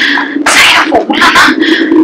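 A person's voice in a run of short, breathy bursts over a steady low hum.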